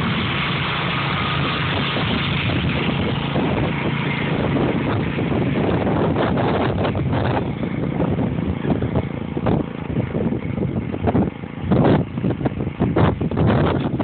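Small engine of a motorized lance crop sprayer's pump running steadily. From about halfway through, wind buffets the microphone in gusts.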